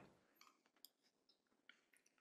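Near silence, broken only by two very faint clicks, one about a second in and one near the end.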